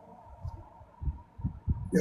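A few dull, low thumps about half a second apart over a faint steady hum, like handling noise on a phone's microphone.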